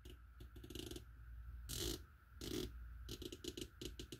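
Elevation turret of a Primary Arms PLxC 1-8 rifle scope turned by hand, its detents giving quick runs of crisp clicks, with two short brushing noises in between.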